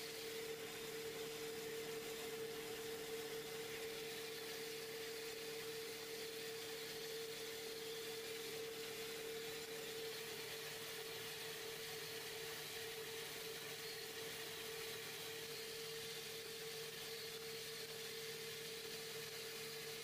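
Wood lathe's electric motor running steadily with its spindle turning: an even hum, with a second, lower tone that drops out about halfway through.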